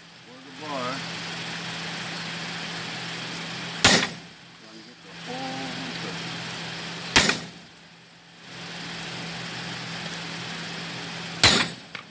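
Hand hammer striking red-hot steel on an anvil three times, a few seconds apart, each blow with a short metallic ring, drawing out the taper of a hot-cut hardie. A steady mechanical drone runs underneath.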